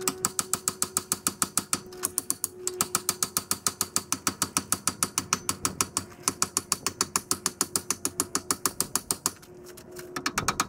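Hand ratchet wrench clicking fast and evenly, about eight clicks a second, in three long runs with brief pauses about two and six seconds in. A faint steady hum runs underneath.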